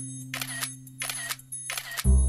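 Edited sound effect: a quick run of sharp clicks over a steady low hum.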